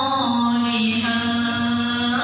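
A boy's voice reciting the Quran in the melodic tilawah style: after a short ornamented turn, he holds one long, steady note.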